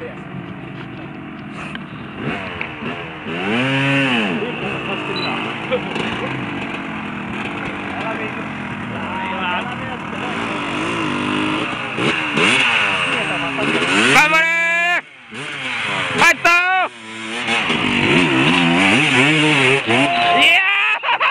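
Off-road dirt bike engines revving hard, the pitch sweeping up and down repeatedly as the throttle is blipped, with the sharpest revving about two-thirds of the way through.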